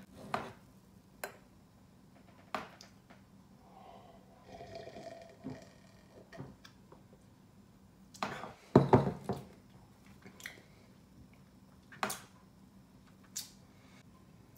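Someone taking a sip of carbonated strawberry cream soda from a metal tankard: small scattered knocks and clinks of the mug being handled, sipping and swallowing, with the loudest cluster of knocks about eight to nine seconds in.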